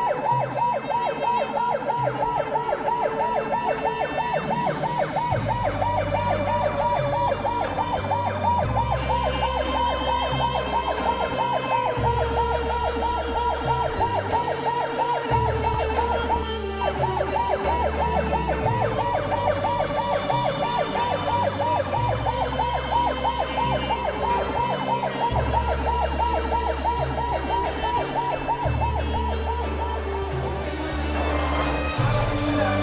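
Emergency vehicle siren on a fast yelp, its pitch rising and falling several times a second without letup, broken only briefly about seventeen seconds in.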